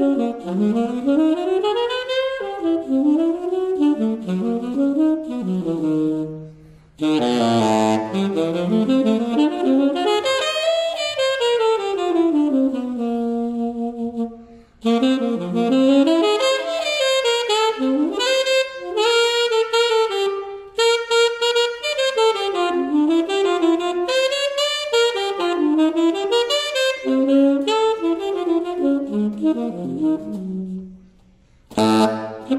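Unaccompanied tenor saxophone playing a freely improvised cadenza: fast runs that climb and fall, broken by short pauses for breath about seven, fifteen and twenty-one seconds in.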